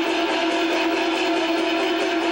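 Peking opera accompaniment for a stage fight: instruments play fast, with a quick even beat and a strong held note underneath.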